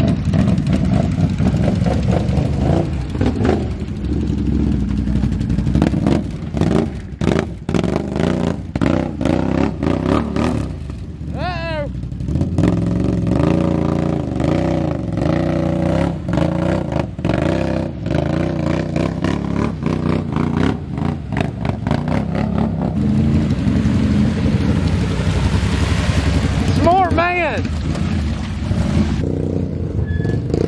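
Can-Am Outlander XMR 850 ATV's V-twin engine revving hard through deep mud, its pitch rising and falling with the throttle as the tires churn and sling mud, with a spell of sharp clattering a few seconds in. Two brief high rising-and-falling cries cut through, about eleven seconds in and again near the end.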